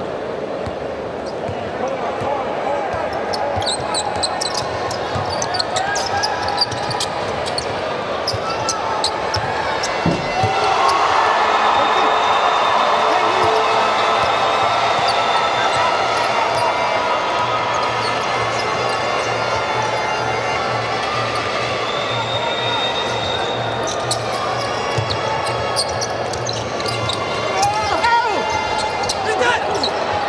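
Basketball being dribbled on a hardwood court under a steady murmur of crowd voices in an indoor arena; the crowd noise swells about ten seconds in.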